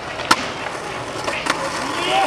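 Skateboard coming down off a concrete ledge, landing with a sharp clack about a third of a second in, then its wheels rolling on paving, with a smaller clack about a second later.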